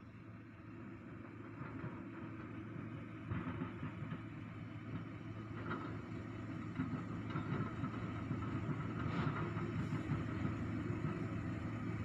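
A motor vehicle engine running with a steady low rumble that grows slowly louder.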